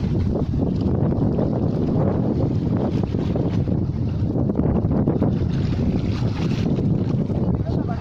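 Wind buffeting the microphone: a steady, dense low rumble with no breaks.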